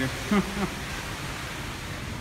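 A man's voice says one word, then a steady, even background hiss with no distinct events.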